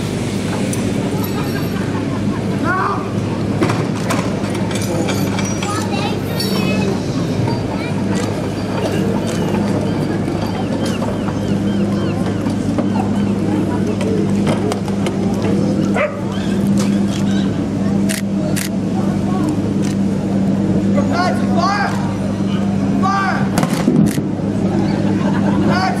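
Cadets hauling and unhitching a wheeled field gun and its limber, with knocks and clatter from the gun gear, most of them in the later part. Voices and shouts are heard over a steady low hum.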